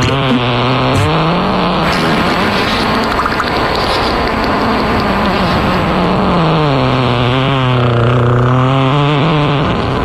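Fart sound effects played as a birthday bit: long, drawn-out low buzzing blasts that waver up and down in pitch, with a rougher, raspier stretch in the middle.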